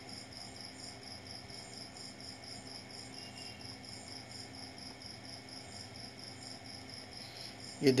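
A high-pitched insect chirp, as of a cricket, pulsing evenly at a few pulses a second and going on steadily at a low level.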